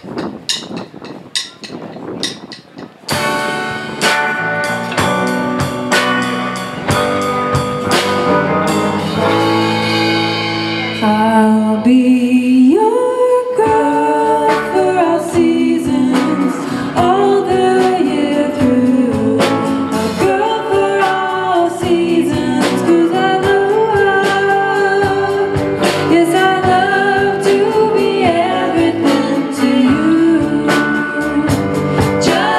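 A surf-rock band playing live: a few sharp clicks, then electric guitar, bass guitar and drums come in together about three seconds in, and a woman's singing voice joins about twelve seconds in.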